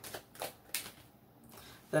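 A tarot deck being shuffled by hand: a few quick papery flicks of cards within the first second or so.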